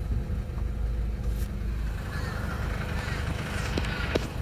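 A car's engine and road noise heard from inside the cabin as the car rolls slowly up to a stop, a steady low rumble. There are a couple of faint clicks near the end.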